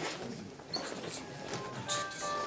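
Mobile phone ringtone playing a melody of short electronic tones, clearest in the second half.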